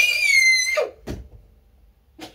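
A young girl's screechy scream of excitement: one very high-pitched cry, nearly steady in pitch, that breaks off under a second in.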